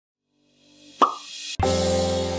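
Intro sound effects: a short rising swell, then a sharp pop about a second in. After a brief break, sustained background music chords start near the end.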